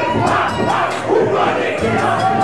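A packed club crowd shouting along in unison over loud live hip-hop music with a steady bass line.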